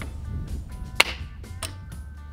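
Background music, with a sharp plastic snap about a second in as a wireless video doorbell is pulled off its mounting plate.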